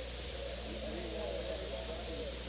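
Indistinct background chatter of several voices in a bar room, over a steady low hum.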